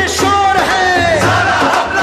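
Hindi film song: a chorus of several voices singing long, gliding lines together over the band's accompaniment.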